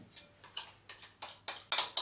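A series of light clicks, about six, that come closer together towards the end.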